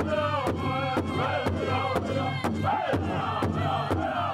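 Southern-style powwow drum group: several men singing vocables in high, falling phrases together over a big powwow drum struck in unison about twice a second.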